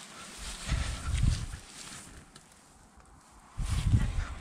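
Someone walking through dry grass with a handheld microphone: two low rumbles of handling noise, about a second in and near the end, over faint rustling.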